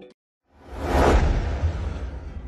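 A whoosh transition sound effect with a deep rumble, accompanying a TV news channel's animated logo ident. It swells in about half a second in, peaks around a second in and then slowly fades.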